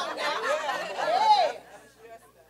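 Voices from a congregation calling out responses, quieter than the preacher's miked voice, dying away about one and a half seconds in.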